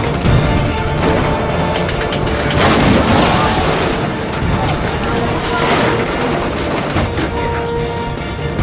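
Action film soundtrack: orchestral score over a heavy low rumble and crashing effects, with a loud noisy swell about three seconds in and another near six seconds.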